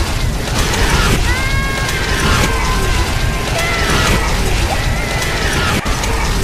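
Tornado sound effect: loud, dense wind noise with rattling, clattering debris and wavering high tones through the middle.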